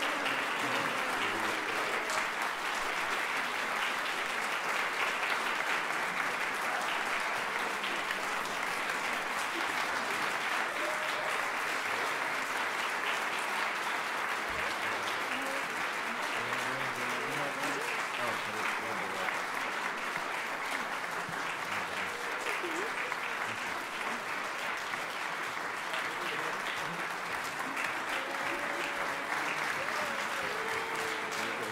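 Theatre audience applauding steadily, with a few voices audible in the crowd.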